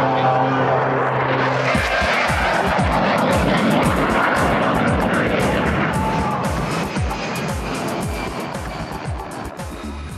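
A held musical chord ends about two seconds in. It gives way to a loud, rough, engine-like noise with a rapid, irregular run of low thuds that fall in pitch, slowly fading toward the end.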